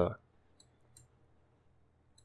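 Two or three faint computer mouse clicks, about half a second and a second in, over near-silent room tone.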